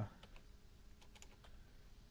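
A few faint, scattered computer keyboard clicks over quiet room tone.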